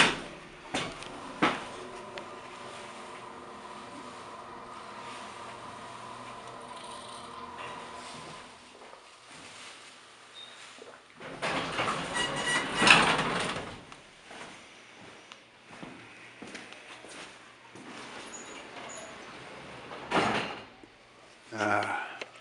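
Vintage 1970s hydraulic elevator: a couple of clicks as it starts, then the machinery running with a steady hum for several seconds while the car travels. Its sliding doors then open with a loud rumble, and near the end there is a single knock, the doors shutting.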